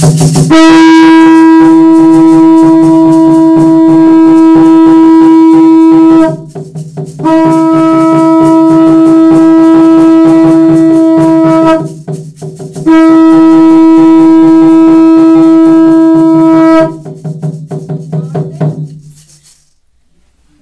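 A conch shell trumpet blown in three long, steady, loud blasts, each held for four to six seconds with short breaks between them, over a lower steady drone that fades out near the end.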